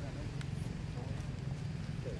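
Faint, distant voices talking over a steady low hum, with a few sharp clicks.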